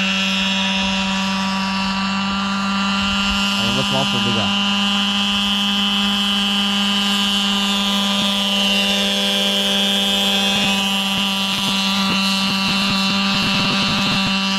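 Unmanned radio-controlled crop-spraying helicopter hovering, its engine and rotor making a steady drone at one unchanging pitch.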